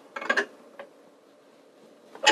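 Open-end wrench clinking on the steel nut of a wall-mounted display hook as the nut is tightened: a quick cluster of sharp metallic clicks near the start, then one faint click.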